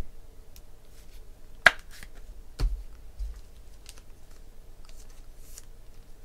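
A few sparse, sharp clicks and taps of trading cards being handled, the loudest about a second and a half in, then a softer click with a low thump about a second later.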